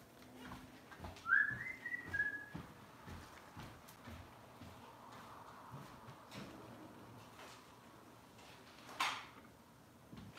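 A brief high whistling tone about a second in: it rises, holds for about a second, then drops a little before stopping. Faint knocks run under it, and a short hiss comes near the end.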